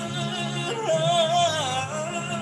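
A man singing a gospel song over instrumental accompaniment, holding a wordless note with vibrato that steps up in pitch a little under a second in and is loudest in the middle.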